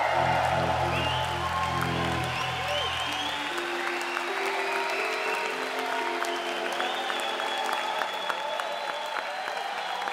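Held synthesizer notes with a deep bass layer that drops out about three and a half seconds in, leaving higher sustained tones, under an audience applauding and cheering with whoops and whistles.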